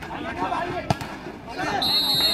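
A volleyball struck hard in a spike, one sharp smack about a second in, over spectators' voices that grow louder near the end. A high steady whistle tone sounds at the very end.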